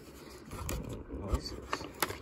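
Faint handling noises: light scrapes and a few small clicks as the styrofoam takeout box and its plastic sauce cups are handled up close.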